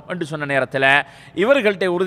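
Speech only: a man lecturing in Tamil, with a short pause about a second in.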